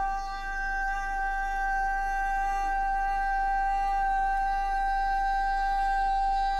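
A young man singing one long, high note, held at an unwavering pitch without a break.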